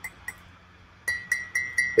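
A ceramic coffee mug tapped with a finger. Two faint taps come near the start, then a quick run of five light clinks, about four a second, each ringing briefly at a high pitch.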